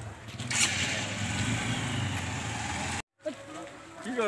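Motorcycle engine running at idle close by, with a rushing burst of noise about half a second in; the sound cuts off abruptly near the end.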